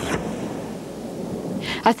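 A photographic print being torn and crumpled by hand close to the microphone, a rough rumbling rip that follows a brighter tearing burst ending right at the start. A voice begins at the very end.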